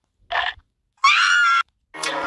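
A brief breathy sound, then a loud, high-pitched cry with a wavering pitch lasting about half a second.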